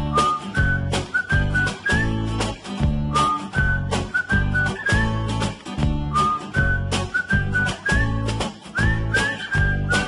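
Outro theme music: a whistled melody over a steady beat with bass.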